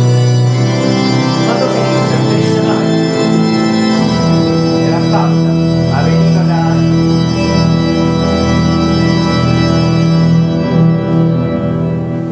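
Pipe organ music played from a recording: slow, sustained minor-key chords, with the chord changing about four seconds in.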